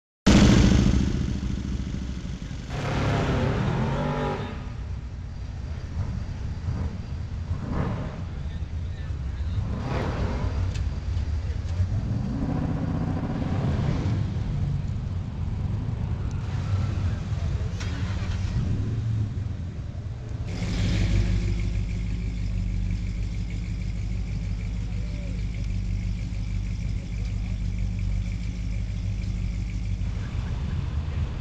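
Ford Gran Torino's engine idling with a steady low rumble. About two-thirds of the way in it gets louder and settles into a steady idle. Other car engines and voices are heard underneath.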